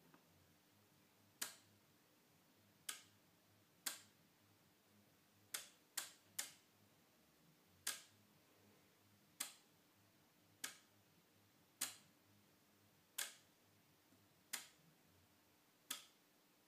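Relays in a home-built relay computer's ALU clicking as each function is selected and its result gated to the data bus: about a dozen sharp single clicks, spaced irregularly about a second apart, with a quick run of three about six seconds in.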